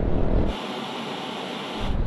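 Wind and road rumble on the camera microphone of a moving Yamaha Aerox 155 scooter. About half a second in it drops to a quieter, thin, steady hiss with no low rumble. The rumble comes back shortly before the end.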